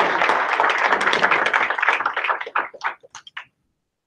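Audience applauding, thinning out to a few scattered claps and stopping about three and a half seconds in.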